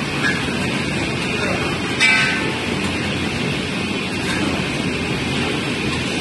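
Automatic mawa kettle running: the stirrer's motor and scraper arm turning through thickening milk in a steam-heated steel pan make a steady mechanical noise. A brief, louder, higher-pitched sound comes about two seconds in.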